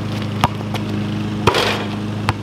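Two sharp basketball knocks about a second apart, the second louder with a short rattling tail, as a dunk hits the rim and backboard, over a steady low drone.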